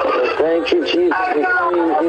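A person's voice carrying on with long, gliding pitch, over background music.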